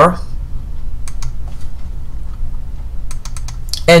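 Light clicking at a computer: a few clicks about a second in, then a quick run of clicks about three seconds in, over a low steady hum.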